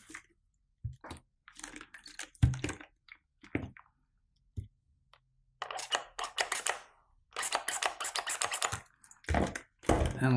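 Scattered clicks and taps of small tools and parts being handled on a workbench, then a few seconds of rapid rustling and scraping near the end.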